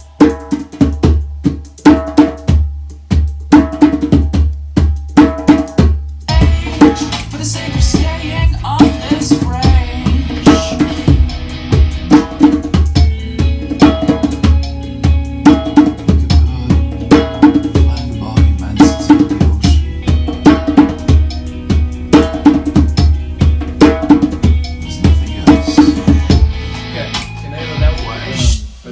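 Djembe played by hand: a steady, rhythmic pattern of sharp strokes, several a second.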